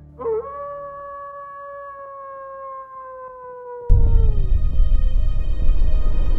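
A wolf howls once, a long call that rises briefly and then slides slowly downward for about four seconds. About four seconds in, a loud, deep rumbling music sting cuts in suddenly and carries on.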